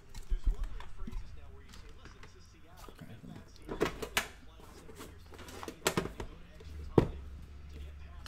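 Cardboard card boxes being handled on a tabletop: scuffing and a few sharp knocks as a box has its tape pulled and is set down, the loudest knock about seven seconds in.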